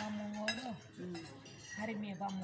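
Light clinks of cutlery and dishes at a dining table, with one sharp clink about halfway through. Over the first part a person holds a long, level hum, and another hum starts near the end.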